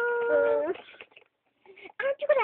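A child's voice holding one long, steady wailing note that slides upward and breaks off less than a second in. After a short pause, talking starts right at the end.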